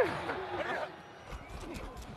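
Faint, indistinct voices over low background noise, picked up by a player's body microphone, with a few light clicks or rustles in a quieter stretch in the middle.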